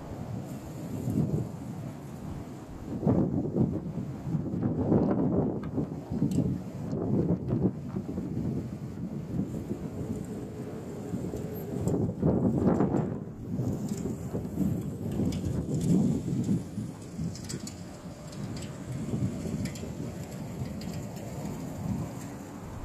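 Strong, gusty wind buffeting the microphone: a low, rough noise that swells and fades in surges, the strongest about three, five and twelve seconds in.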